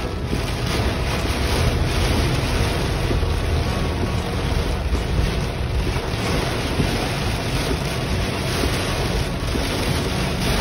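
Heavy rain falling on a car's roof and windshield in a thunderstorm, heard from inside the car as a loud, steady rushing hiss.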